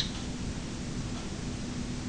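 Steady hiss with a faint, even hum underneath: the background noise of the recording in a pause between readings.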